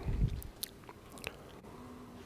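A pause in speech at a lectern microphone: quiet room tone with a few faint, short clicks, like small mouth noises close to the microphone.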